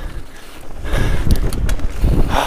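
Downhill mountain bike running fast over a rough dirt trail: low tyre rumble and wind buffeting on the on-board camera's microphone, with a few sharp rattling knocks from the bike around the middle. Briefly quieter just after the start, then rougher.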